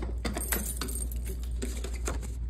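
Keys on a key ring jangling and clicking as a key unlocks a metal post office box and its small door swings open, over a steady low hum.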